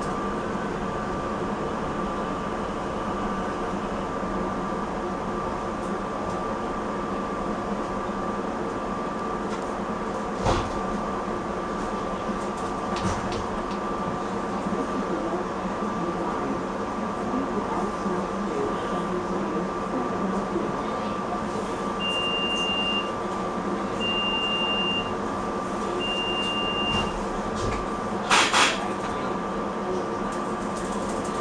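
Cab of a SEPTA Silverliner V electric multiple-unit train underway: a steady running hum with a constant high whine over the rumble of the car. Near the end, three short high beeps about two seconds apart, then a brief loud hiss.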